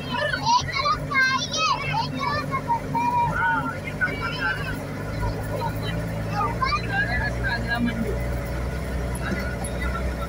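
Voices, some high like children's, talking over the steady low hum of a van driving slowly on a rough dirt road. The engine hum grows louder about halfway through.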